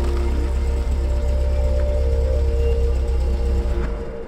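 Background music over a steady low car engine rumble as a car drives up; the rumble cuts off abruptly near the end.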